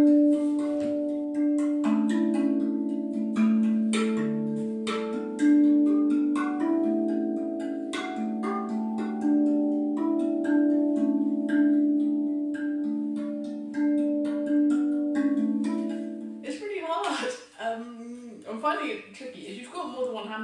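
A steel RAV drum struck by hand, playing a slow melody of single ringing notes, each one sounding on under the next. The notes stop about three-quarters of the way through and a voice follows.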